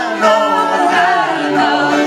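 An English folk band singing in harmony, several voices together, over fiddles, acoustic guitar and button accordion.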